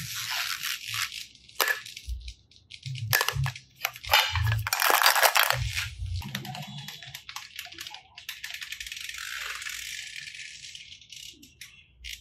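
Hard plastic toys being handled: plastic capsule eggs, balls and tubs rattling and clacking against each other, with the loudest burst of clatter about four to six seconds in.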